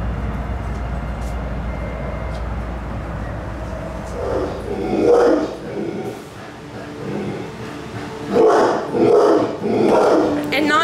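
An animal calling in two short clusters, about four seconds apart. The calls are barking-like and mid-pitched, heard over steady background noise with a low rumble that stops about halfway through.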